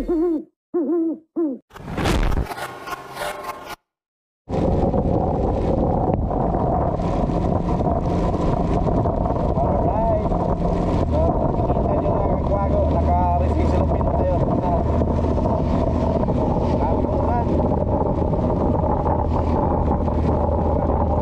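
A channel intro sting of three owl hoots and a whoosh, cut off by about a second of silence about four seconds in. Then a motorcycle ridden in the rain: a steady low engine hum under wind and rain noise on the helmet-mounted microphone.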